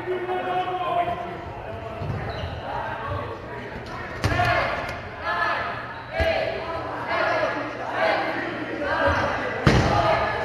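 Dodgeballs striking hard surfaces in a gym with sharp slaps: one about four seconds in, another about six seconds in, and the loudest near the end. Players' voices call and shout indistinctly throughout.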